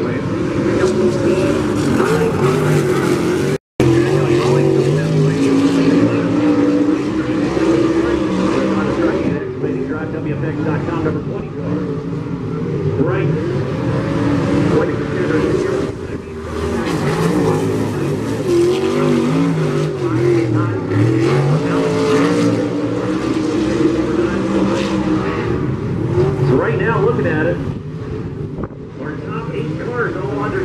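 Several dirt-track race car engines running together as the cars circle the oval, their pitch rising and falling as they accelerate and lift through the turns. The sound cuts out for a split second about three and a half seconds in.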